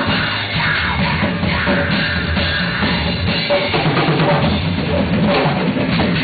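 Live metal band playing an instrumental passage without vocals: electric guitar through a Marshall amp over a full drum kit driven by bass drum and snare, loud and continuous.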